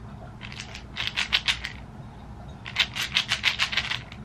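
Pills rattling inside plastic prescription bottles as they are shaken, in two bursts of rapid rattling, the second near the end.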